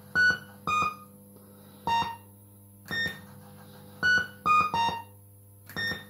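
Fruit machine playing short electronic beeping notes while its reels spin: about eight notes in small groups with pauses between them, over a steady low hum.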